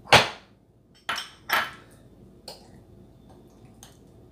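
Glass bowls and a metal spoon knocking against each other and the countertop: one loud clunk at the start, two more about a second later, then a few light clicks.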